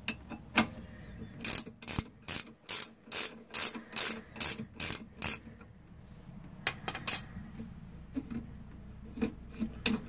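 Ratcheting wrench clicking in quick, even strokes, about three a second, as it backs out a rear caliper bracket bolt, followed by a few scattered metal clicks as the loosened bolt and caliper come off.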